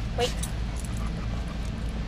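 A dog gives one brief, short whine about a quarter of a second in, over a steady low background hum.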